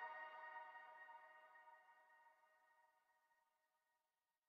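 The faint tail of the beat's last synthesized chord dying away, reaching near silence about a second in.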